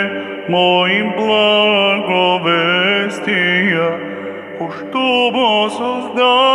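A man chanting an Orthodox hymn solo into a handheld microphone, holding long notes and sliding between pitches with brief breaths.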